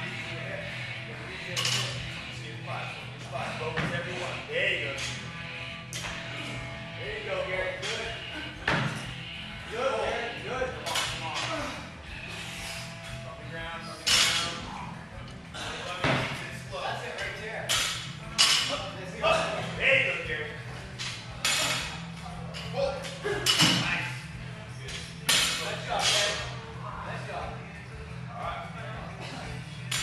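Workout noise in a gym: a series of sharp knocks and clanks from barbells and from jumps landing on wooden plyo boxes, over background music and voices.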